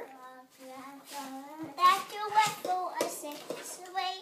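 A young child singing and babbling in a high voice, with a wavering tune and no clear words.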